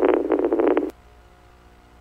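A short, buzzy police-radio transmission burst with no clear words, over the radio's narrow audio channel. It cuts off with a keying click just under a second in, leaving faint radio hiss.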